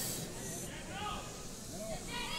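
Several people talking at moderate level, some in high-pitched, child-like voices, over a steady hiss.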